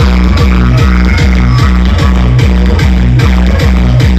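Loud electronic dance music played through a DJ sound truck's speaker system, with a heavy bass beat repeating steadily.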